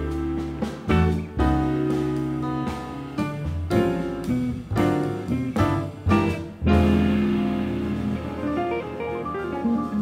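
Live jazz quartet of piano, electric guitar, double bass and drums playing a harmonically dense post-bop tune: a run of sharp accented chords hit together by the band, then a held chord that rings on through the last third.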